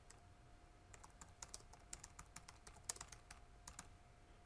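Faint typing on a computer keyboard: a quick, irregular run of key clicks as a short phrase is typed.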